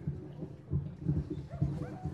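A dog faintly whimpering and yipping, with short rising and falling high notes near the end, over a low irregular rumble.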